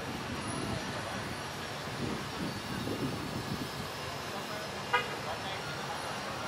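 Steady distant engine noise of a Boeing 737 jet airliner taxiing, with indistinct voices of people talking. A single short horn toot about five seconds in.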